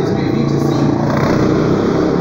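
A man's voice over a motor vehicle engine running steadily.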